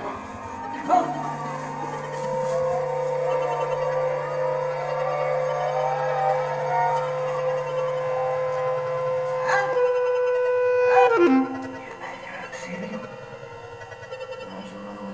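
Bass clarinet holding one long steady note, with a lower steady electronic tone beneath it, in contemporary music for bass clarinet and live electronics. The note breaks off about eleven seconds in and the music turns quieter and sparser.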